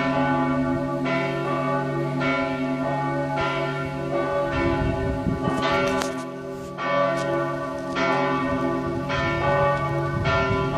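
The two middle bells of Strängnäs Cathedral, tuned to D and F, ringing together in overlapping strokes about once a second, their hum carrying on between strikes. This is helgmålsringning, the Swedish ringing that announces the holy day.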